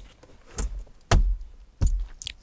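Three short knocks and thuds from handling the plastic center console and cup holders, the middle one the heaviest.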